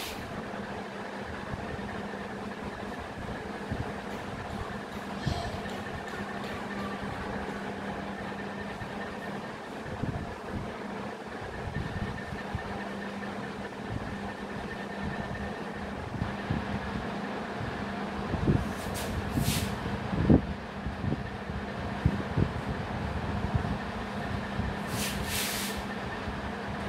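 A marker writing on a whiteboard, giving short scratchy squeaks and light taps, over a steady mechanical hum in the room.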